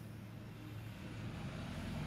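Low background rumble, growing louder toward the end.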